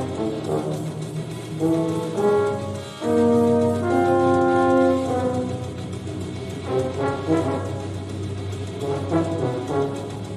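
French horn and tuba playing a contemporary duet: scattered short notes, then loud sustained notes together from about three to five seconds in, then shorter notes again.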